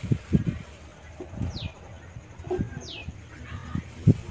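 A bird gives two short whistled calls that fall in pitch, about a second and a half apart, over scattered low muffled bumps.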